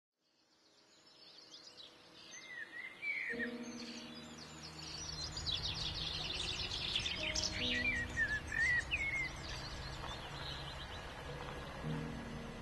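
Birds singing and chirping, fading in from silence over the first few seconds, with a dense run of quick chirps and trills in the middle. A low steady rumble with a few held tones comes in about three seconds in.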